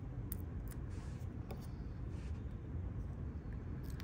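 Faint small ticks and scratches of a weeding hook picking the insides out of cut vinyl letters, over a steady low room hum.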